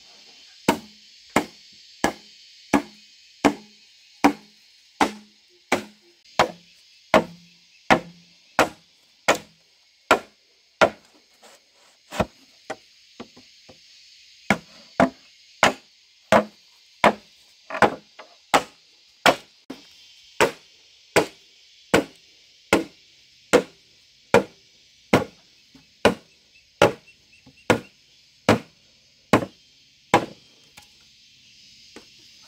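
A hand tool chopping into green bamboo poles with steady, evenly spaced blows, about three every two seconds. The strokes grow lighter and more irregular for a few seconds partway through, then resume their regular pace.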